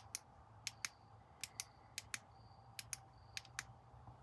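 Faint, sharp clicks in pairs, about one pair every three-quarters of a second, with a thin high whine coming and going between some of them.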